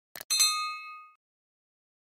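Subscribe-button animation sound effect: a short mouse click, then a bright notification-bell ding that rings out and fades within about a second.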